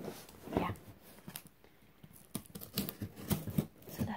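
A cardboard USPS medium flat rate box being cracked open by hand: irregular sharp scrapes and clicks of tape and cardboard, a few a second.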